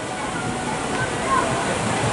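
Steady outdoor rushing noise, with faint distant voices about a second in.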